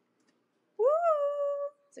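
A single high, drawn-out vocal call about a second in, rising in pitch and then held steady for most of a second.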